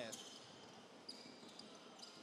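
Faint court sounds of a basketball game in play: a basketball being dribbled on the hardwood floor of a sports hall.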